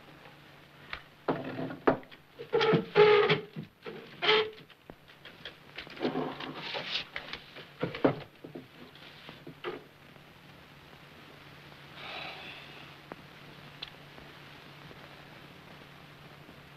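Glass jars and apparatus being handled on a wooden table: two clusters of knocks and clinks, some briefly ringing, then a fainter one. A steady low hum runs underneath.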